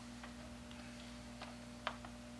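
Quiet room tone with a steady low electrical hum and a handful of faint, irregular ticks, about one every half second.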